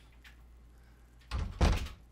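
Refrigerator door pulled open, with two quick dull thumps about a second and a half in, the second louder.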